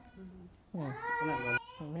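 A woman's voice: after a short quiet start, one drawn-out wavering vocal sound without clear words about a second in, then a brief shorter one near the end, strained and close to tears.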